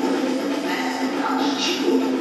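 A pop song with sung vocals over a backing track, played from a projected music video through a hall's loudspeakers: a waste-sorting song.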